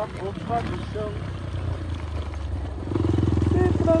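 A motorcycle engine running along a dirt road, getting louder and pulsing harder about three seconds in as it speeds up. Over it, a voice sings a sertanejo song about red dust.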